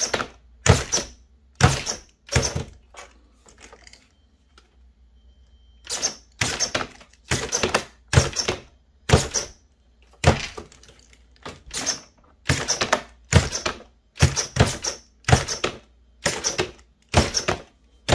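Redcat Sixty-Four RC lowrider hopping, its single servo kicking the front end up. Each hop is a sharp clack, coming about once a second, with a pause of a few seconds after the first four.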